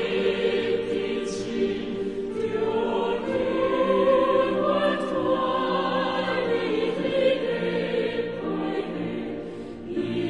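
Background choral music: a choir singing, with long held notes that move slowly in pitch.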